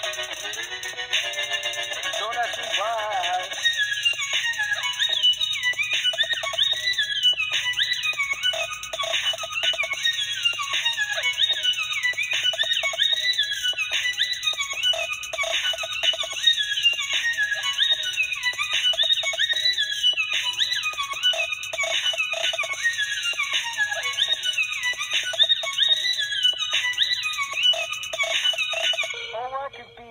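Electronic dance track made in GarageBand: a few seconds of wavering held synth chords, then a busy high synth line of short notes with quick downward pitch glides over a faint low pulse. The music breaks off near the end.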